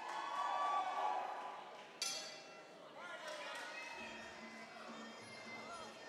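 Crowd voices in a large hall, then a single ringing strike of the ring bell about two seconds in, marking the start of the round.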